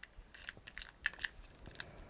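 Faint, irregular plastic clicks and light rattling as the small white plastic EarPods case is opened and the coiled earbuds are worked out of it.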